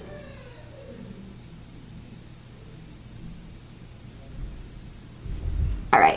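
A steady low hum, then about five seconds in a short low rumble that ends in a thump: handling noise as the camera is moved.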